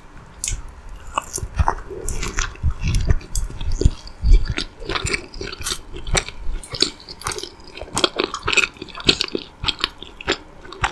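Close-miked biting into and chewing a soft chocolate-frosted yeast donut with sprinkles, with many small mouth clicks throughout and heavier low thuds during the first few seconds of chewing.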